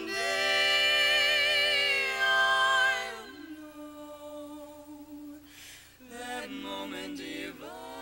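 Women's barbershop quartet singing a cappella in close four-part harmony. A loud chord is held with vibrato for about three seconds, then softer sustained notes follow, and a new phrase builds from about six seconds in.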